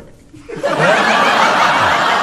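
A studio audience laughing, breaking out about half a second in after a brief lull and carrying on steadily.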